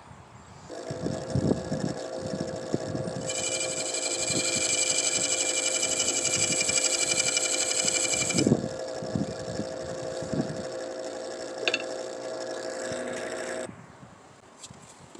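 Wood lathe running with a steady hum while a gouge cuts the face of a spinning black walnut bowl. From about three seconds in to about eight and a half seconds the cut gives a loud, high-pitched scraping whine, then the cutting goes on more softly until the sound cuts off suddenly near the end.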